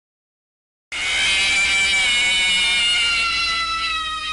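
Title-card sound effect: silence, then a sudden loud hit about a second in that rings on as a cluster of tones slowly falling in pitch, getting quieter toward the end.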